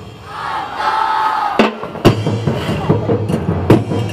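A group of voices raising one long shout together, then drums striking up about one and a half seconds in with sharp, loud hits, two or three a second, as street-dance percussion.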